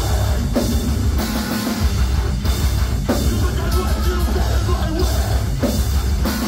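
Metalcore band playing live and loud: distorted guitars, bass and drum kit in a heavy instrumental passage, with repeated crash-cymbal accents every second or so.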